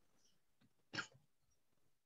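Near silence: room tone on a video call, with one faint short noise about a second in.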